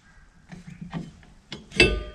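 A few faint metal scrapes, then one sharp metallic clink that rings briefly near the end, as the steel brake-shoe adjustment tool comes off the rear hub.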